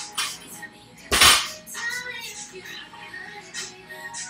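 A 185 lb barbell loaded with Rogue rubber bumper plates is dropped from the shoulders onto the rubber gym floor, landing with one heavy impact about a second in.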